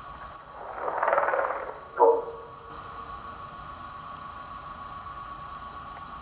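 A recording of the alien heptapods' calls played back: a low, rough call lasting about a second, then a short louder blast about two seconds in, followed by a steady hum with faint high tones.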